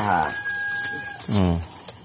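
A man's wordless voice sliding down in pitch twice, about a second and a half apart, with a brief thin steady tone between the two. Crickets chirp steadily and faintly behind it.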